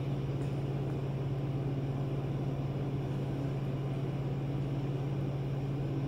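A steady low-pitched hum that does not change.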